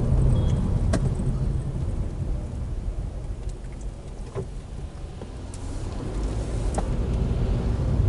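Cabin noise of a Toyota Isis 2.0-litre four-cylinder minivan driving in town: a steady low engine and road rumble that eases off through the middle as the car slows for a turn and builds again near the end as it pulls away. A few faint clicks.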